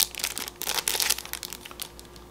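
Small clear plastic bag holding a pin crinkling as it is handled and pulled open: a run of quick, sharp crackles, thickest around the middle.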